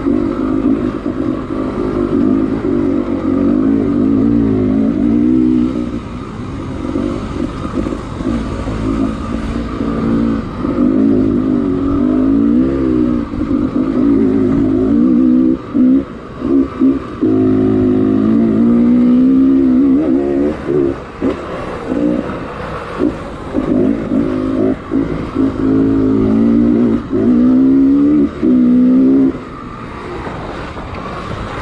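Enduro dirt bike engine heard from on the bike, its revs rising and falling continuously with the throttle as it is ridden along a trail. In the second half the engine note drops away briefly several times before picking up again.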